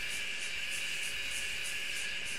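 Steady low background hiss of outdoor ambience, with a faint high-pitched pulsing about four times a second.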